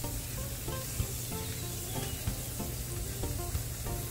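Shrimp sizzling on a hot grill, a steady hiss, with background music of short plucked-sounding notes over it.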